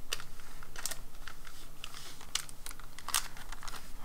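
A plastic eraser packet being handled, giving irregular light clicks and crinkles of thin plastic wrapping.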